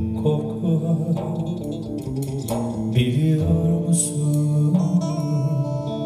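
Live performance of a slow Turkish pop song: a man sings into a microphone, accompanied by guitar.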